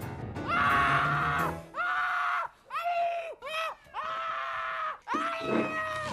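Trailer music carried by a high voice singing a slow line of held notes: a long note early on, then a string of shorter ones. Each note slides into pitch and falls away at its end.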